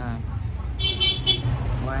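A vehicle horn beeping three times in quick succession, over a steady low traffic rumble.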